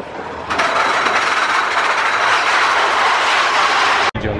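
Big Thunder Mountain Railroad mine-train roller coaster running along its track, a steady loud rushing noise that starts about half a second in.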